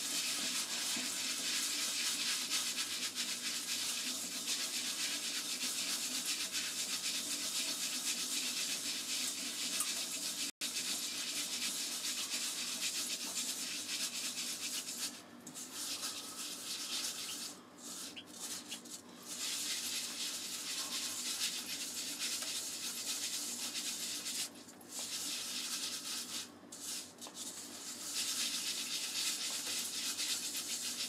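Rice being washed by hand at the sink: a steady scrubbing, rushing hiss of grains and water that breaks off briefly a few times in the second half.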